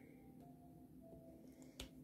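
Near silence broken by one short click near the end, a diamond-painting drill pen tapping a drill onto the canvas.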